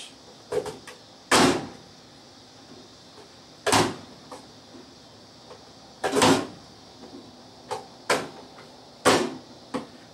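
Hand-pressed plastic vegetable chopper with a quarter-inch dicing grid, its lid pushed down to force potatoes through the blades: four loud chops about two and a half seconds apart, with lighter plastic clicks in between.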